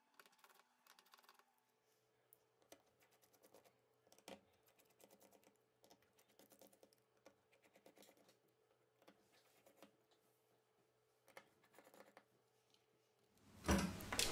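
Near silence with faint, irregular small clicks and ticks of a precision screwdriver working screws out of a smartphone's middle frame, the plainest about four seconds in, over a faint steady hum.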